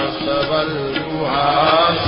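A male voice chanting Sanskrit hymn verses in a melodic, sung style, over a steady low drone. In the second half a long held note glides upward.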